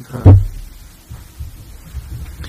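A single loud, low thump about a quarter of a second in, then a low hum.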